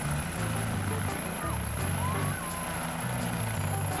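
Air ambulance helicopter's rotor and turbine engine running as it lifts off from the grass: a steady rushing noise over a low rumble.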